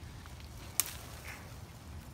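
A single sharp snap a little under a second in, as a kenep twig is broken off the tree by hand.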